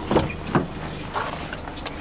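A car door's latch clicking as the outside handle is pulled and the door is opened, followed by a few short knocks and a rustle as someone climbs into the seat.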